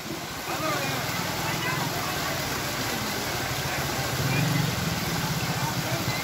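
Floodwater gushing and foaming over rubble in a flooded lane: a steady rushing noise with an even low throb beneath it.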